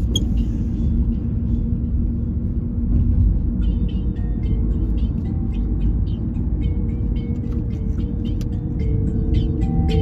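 A car's low road and engine rumble, heard from inside the cabin while driving. Music with held notes and light percussive ticks comes in faintly about three to four seconds in and grows more prominent near the end.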